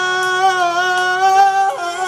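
A man singing a loud, long held high note of a slow love ballad, breaking off about a second and a half in.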